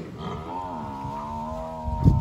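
A buffalo lowing: one long, low, steady moo.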